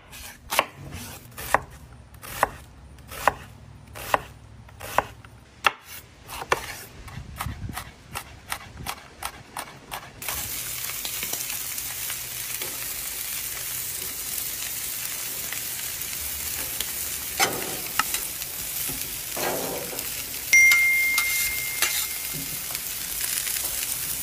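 A kitchen knife chopping a red onion on a cutting board, sharp chops under a second apart that come quicker and lighter after about six seconds. Then, after a sudden cut, a steady sizzle of oil and diced vegetables on a hot flat-top griddle, with a few spatula scrapes, a louder surge and a short high tone near the end.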